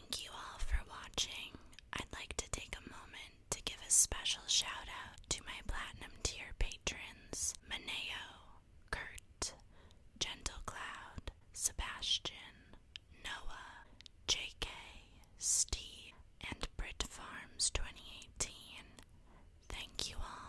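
A woman whispering softly in short phrases, with small clicks between them.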